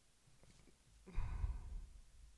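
A person sighing once: a short, breathy exhale a little past a second in.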